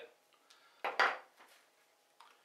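Small hard kit being handled and set down: a short clatter about a second in, with a few lighter clicks around it.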